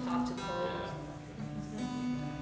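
An acoustic guitar string plucked and left ringing while it is tuned by turning its peg: one note sounds at the start and is plucked again near the end.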